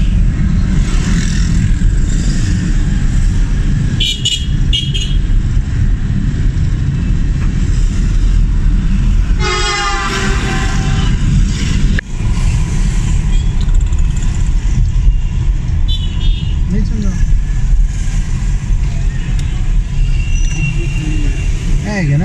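Road traffic heard from inside a moving vehicle: a steady engine and road rumble, with a vehicle horn sounding one long blast about ten seconds in and two short high beeps around four seconds in.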